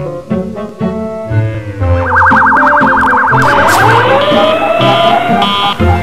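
Cartoon soundtrack music, joined about two seconds in by a fast-warbling, siren-like alarm tone. Rising glides follow, and then a quickly repeating electronic beep, a radar-warning style alarm effect.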